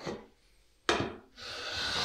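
Marking gauge drawn along the edge of a wooden jaw, its cutter scratching the wood in repeated strokes. A short stroke starts sharply just under a second in, and a longer one follows in the second half.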